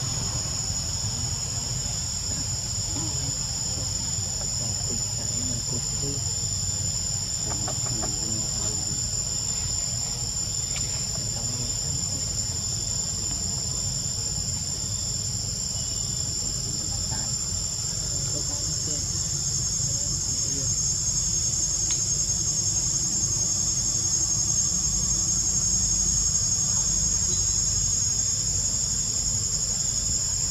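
A steady, high-pitched chorus of calling insects, with a low rumble underneath; it grows slightly louder about two-thirds of the way in.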